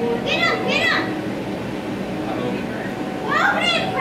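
Children's high voices calling out twice, near the start and near the end, over the constant babble of a crowded indoor play area.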